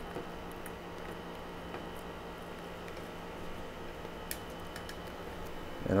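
A few faint, light clicks from a plastic RJ45 connector being wiggled onto the thick jacket of an outdoor Cat6 cable, over a steady low hum.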